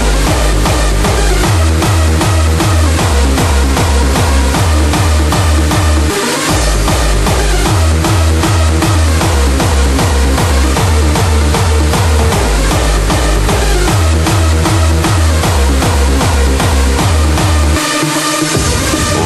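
Hardstyle dance music: a heavy distorted kick drum pounding at about two and a half beats a second under synth layers, with the kick dropping out for a moment about six seconds in.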